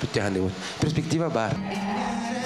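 A man's voice speaking into a handheld microphone, lively and rising and falling in pitch. Near the end it gives way to music with steady held notes.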